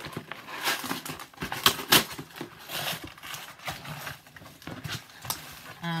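A cardboard mailer box being torn open and handled: irregular sharp rips, rustles and knocks of cardboard.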